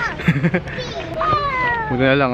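Human voices, with one long, high-pitched vocal call in the second half that slides gently downward.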